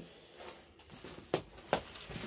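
Quiet movement over rubble and dry twigs, with two sharp snaps or clicks about half a second apart near the middle.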